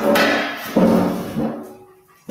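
StreamYard's go-live alert sounding, the signal that the broadcast has started: a short run of chime-like tones, with a new tone about three-quarters of a second in and a fainter one soon after, each fading away.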